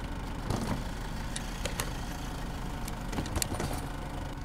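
Steady low rumble of a car heard from inside the cabin, with a few light clicks.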